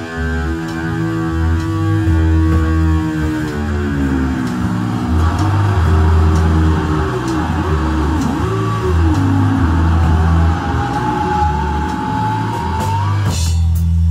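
Live rock band: a distorted electric guitar plays a lead solo over bass guitar and drums. The held guitar notes dive in pitch about four seconds in, swoop up and down several times, then settle into a long high note that slowly rises and cuts off near the end, leaving the bass playing on.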